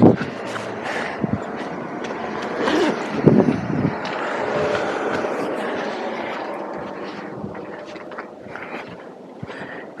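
Street traffic: a vehicle passing on the road, its noise swelling to about the middle and then fading away.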